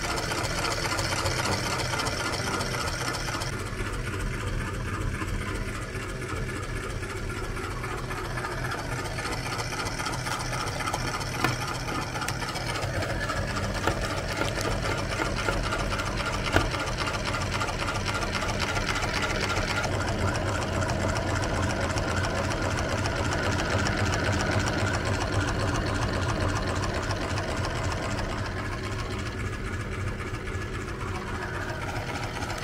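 Motor-driven metal meat grinder running steadily, its auger grinding frozen ice cream bars, with a couple of brief sharp clicks partway through.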